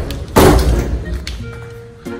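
A stuck door being shoved: one heavy bang about half a second in that dies away over a second or so.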